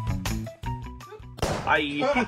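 Background music with a regular beat and short pitched notes, fading after about a second; a voice begins about one and a half seconds in.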